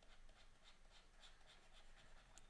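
Faint, quick scratching of a stylus on a drawing tablet: a run of short back-and-forth strokes, several a second, as a shape is hatched in.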